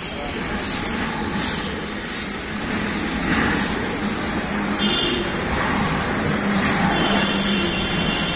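Steady road-traffic noise of passing vehicles, with a few brief high tones around the middle and near the end.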